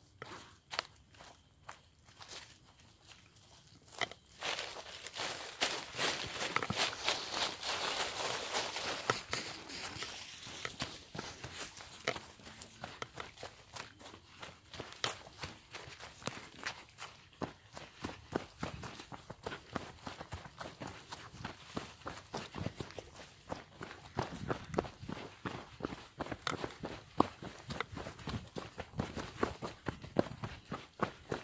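Footsteps of people moving quickly on a dirt trail covered in dry leaves, a dense run of short crunching steps that starts quietly and picks up about four seconds in.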